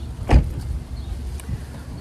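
A car door shutting with a single solid thump about a third of a second in, over a low steady rumble. A faint click follows later.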